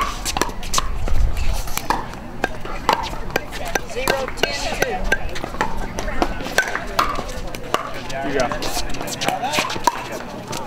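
Sharp, irregular pops of pickleball paddles striking hollow plastic balls, several a second, with voices talking underneath.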